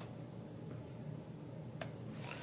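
One sharp snip of small scissors cutting through the foam of a tied fly, near the end; otherwise only faint room hum.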